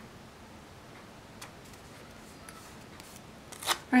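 Faint taps and ticks of paper planner stickers being pressed down and handled, then a louder, sharp paper crackle near the end as a sticker is lifted.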